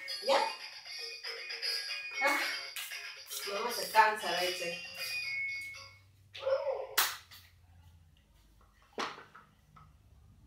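Electronic tune with a recorded voice from a ride-on lion toy, playing for about six seconds and then stopping. After it come a short vocal sound and two sharp knocks, about seven and nine seconds in.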